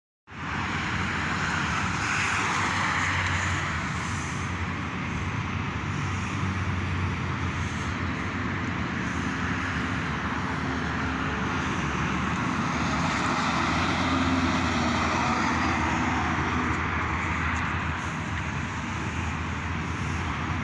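Steady outdoor background noise, a low rumble with a broad hiss, starting suddenly just after the start and holding level throughout.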